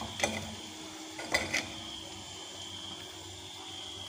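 Steel slotted spoon clinking against an iron kadai, three short metallic taps, as a deep-fried potato chop is lifted out of the hot oil. Under the taps, the oil sizzles faintly and steadily.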